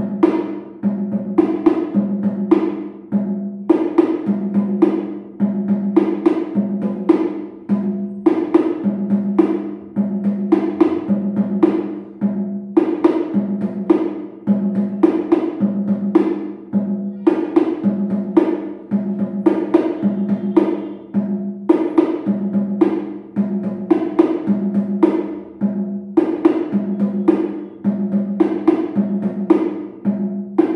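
A pair of hand-played bongo drums, the lower and higher drum alternating in a fast, steady run of strokes. It is an eight-beat exercise with single strokes on beats one, four and eight and doubled strokes on the others, played up to speed. The pattern recurs about once a second.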